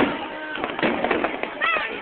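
A firework shell bursts with a sharp bang, followed by dense crackling as its many small stars pop. A short voice call rises over the crackle shortly before the end.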